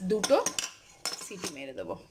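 Aluminium pressure cooker lid being fitted and closed onto the pot, metal scraping and clinking against the rim, with some squealing pitch to the scrape.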